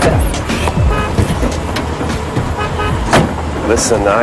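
Road traffic with a steady low rumble, mixed with background music.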